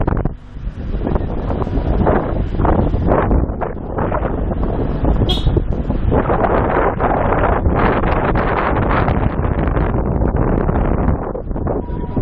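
Wind buffeting an action camera's microphone as it rides on a moving vehicle, loud and gusting, with the vehicle's running noise underneath. A brief high-pitched squeak cuts through about five seconds in.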